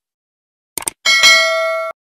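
Subscribe-button animation sound effects: a quick cluster of mouse clicks, then a bright ringing bell-notification chime with several steady tones. The chime is loud and cuts off abruptly after about a second.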